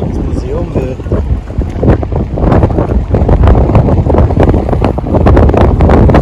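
Strong wind buffeting the microphone: a loud, gusting low rumble that grows louder about halfway through.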